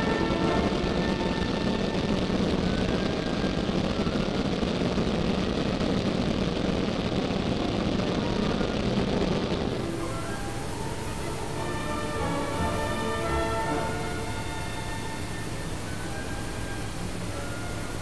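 Background music laid over the steady drone of a Zenith CH701 light aircraft's engine and propeller heard from the cockpit. About ten seconds in the sound changes suddenly: the drone drops and the music's notes stand out more clearly.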